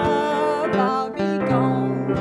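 A woman singing a gospel song with acoustic guitar accompaniment; she holds one long note at the start, then the melody moves on.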